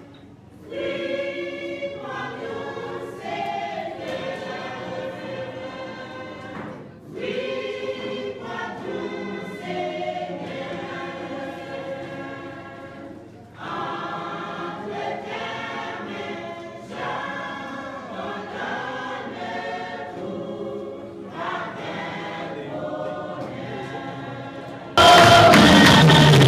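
A group of voices singing together, phrase by phrase with short breaks between lines. About a second before the end, the sound cuts abruptly to much louder singing.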